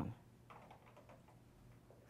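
Near silence: room tone with a few faint, short clicks and rustles about half a second in.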